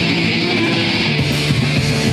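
Punk band playing loud and live: distorted electric guitar with bass and drums.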